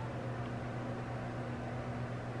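Steady low hum with a faint hiss over it, unchanging throughout: room background noise with no distinct event.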